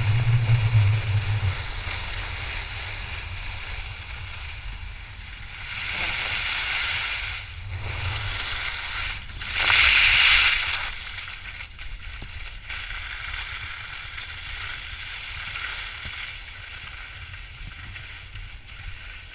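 Skis carving on freshly groomed corduroy snow: a hissing scrape that swells and fades with the turns, loudest in a hard edge scrape about ten seconds in.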